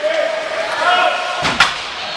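Spectators' voices at an ice hockey game, with one sharp bang against the rink boards about one and a half seconds in.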